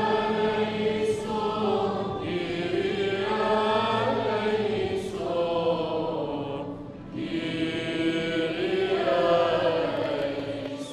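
Arabic liturgical chant of the Maronite epiclesis, sung in long, held notes that slowly rise and fall, with two short breaks about two and seven seconds in.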